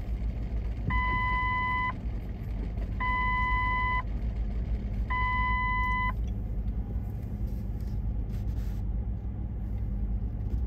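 A vehicle's electronic reversing alarm gives three long beeps, each about a second long and about two seconds apart, over the steady low rumble of street traffic.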